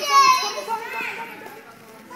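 A toddler's high-pitched squeal that trails off shortly after the start, then a short high call about a second in, with quieter children's voices under it.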